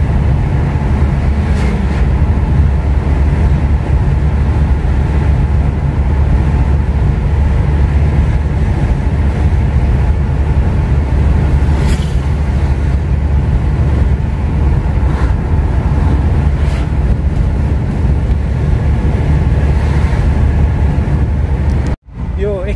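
Steady low rumble of engine and tyre noise heard inside the cabin of a moving Toyota Innova, with a faint click about twelve seconds in.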